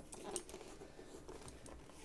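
Faint handling of an OGK Kabuto Ryuki system helmet turned in the hands: a few light plastic ticks and rustles, the clearest about a third of a second in.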